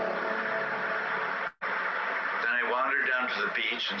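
Steady rushing of surf washing up on a beach, played from a film clip's soundtrack, with a split-second dropout about a second and a half in. A man's reading voice comes in over the surf after about two and a half seconds.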